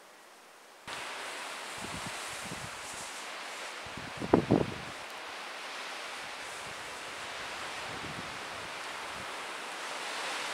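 Gusty wind blowing through the bush-line trees and buffeting the microphone, beginning suddenly about a second in. A few loud blasts of wind on the microphone about four seconds in are the loudest moment.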